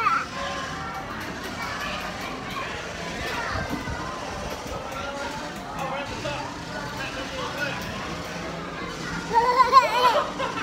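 Amusement-park background of children's voices and music around a kiddie ride, with a toddler's loud, excited squeal of delight near the end.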